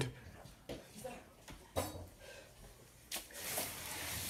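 A few faint knocks and handling noises, then near the end a hiss rises: hot water spraying out under pressure from a leaking pipe.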